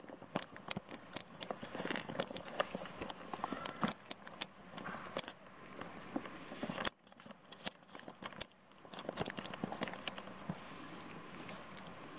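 Two cats eating cooked rice off a plate: a quick, irregular run of small wet clicks and smacks from chewing and licking. The clicks thin out a little past halfway and have nearly stopped near the end.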